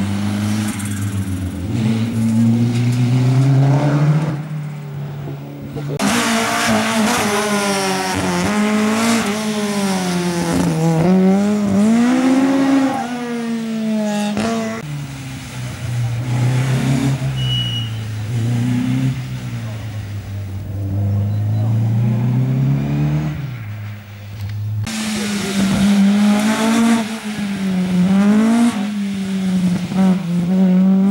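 Rally cars at speed on a stage, one after another, engines revving hard and dropping in pitch at each gear change, with the sound changing abruptly where one car's pass gives way to the next.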